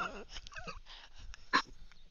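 Quiet, stifled laughter from people trying to hold it in: high, wavering squeaks, with a short louder burst of laughter about one and a half seconds in.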